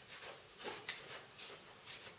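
Faint, irregular rubbing and light scuffing: a lint-free cloth wiping isopropanol cleaner over the face of an acrylic block.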